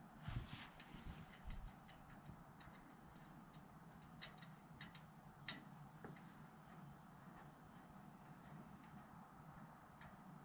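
Near silence with faint room tone, broken by a few soft knocks in the first second and a half and a few sharp light clicks around four to five and a half seconds in, from hands handling the metal front-suspension parts of a race car.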